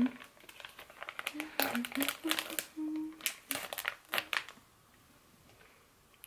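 Plastic-foil sheet-mask sachet being peeled and torn open, a run of sharp crinkles and crackles that stops about four and a half seconds in.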